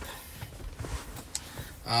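Faint handling of a cardboard product box as it is opened: a soft rustle with a couple of small clicks. A man's hesitant "uh" comes near the end.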